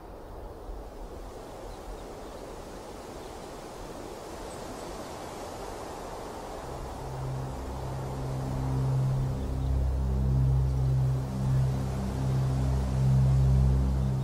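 A soft, even rushing hiss like wind. About halfway through, a low droning music score comes in and swells in slow pulses, becoming the loudest sound.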